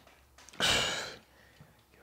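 A man's single hard breath out from exertion, starting about half a second in and fading over about half a second, while he works heavy dumbbells through seated calf raises.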